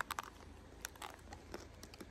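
Faint, scattered crunches and clicks of chewing a bite of a chocolate-coated ice cream cone.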